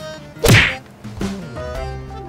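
A sudden loud whack about half a second in, over light background music.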